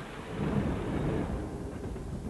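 Low rumbling noise of a train passing, swelling just after the start and easing off near the end.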